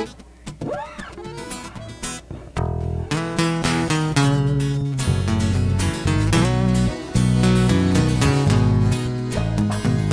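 Guitar-led instrumental intro of a sertanejo song: a few sparse plucked notes at first, then bass and fuller plucked and strummed accompaniment come in about three seconds in and play on steadily.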